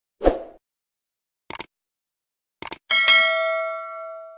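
Sound effects of an animated subscribe button: a short thump, two sharp clicks about a second apart, then a bright notification-bell ding that rings on and slowly fades.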